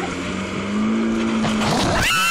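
Towing speedboat's engine running at a steady drone, its pitch rising slightly about a second in, over the rush of wind and water.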